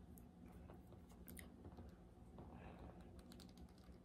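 Near silence with faint, scattered small clicks as fingers work and pinch at a small plastic toy piece, trying to pry it loose.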